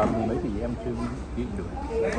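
Speech: people talking in Vietnamese, one voice rising sharply at the start and trailing off in drawn-out voiced sounds.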